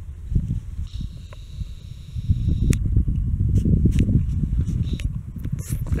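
A herd of horses galloping over a grass pasture, a dense, irregular drumming of hoofbeats that sounds like thunder. It grows louder about two seconds in as the herd comes closer.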